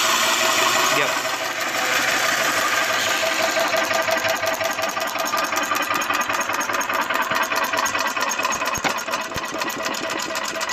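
Small single-cylinder flathead engine with its cylinder head removed, turning over steadily with a rapid, even mechanical clatter.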